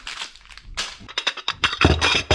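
Porcelain cup and saucer being handled on a wooden counter: a quickening run of short clinks and knocks in the second half.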